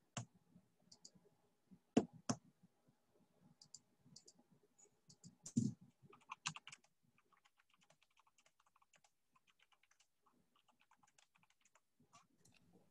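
Faint computer keyboard typing and clicking: a few sharp separate clicks in the first seven seconds, then a run of light, rapid keystrokes.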